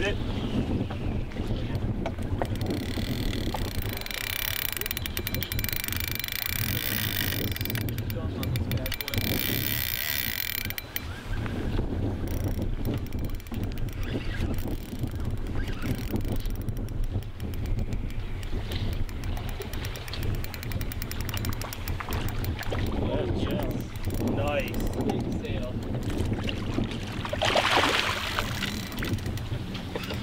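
Wind rumbling on the microphone, a steady low noise, with faint, indistinct voices in the background.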